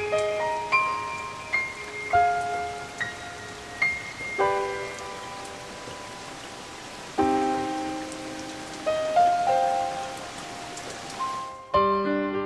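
Steady hiss of heavy rain with sparse, single bell-like notes struck one at a time and ringing out over it. Near the end the rain cuts off suddenly and fuller piano chords come in.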